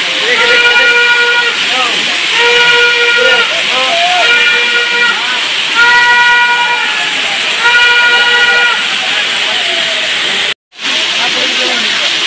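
Steady rushing of a waterfall and its blowing spray. Over it, a flat, high, steady tone sounds for about a second at a time, roughly every two seconds, five times, then stops. A brief dropout comes near the end.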